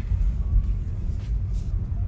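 Low, steady rumble of tyre and road noise inside the cabin of a Tesla Model 3 electric car rolling slowly at about 10 mph.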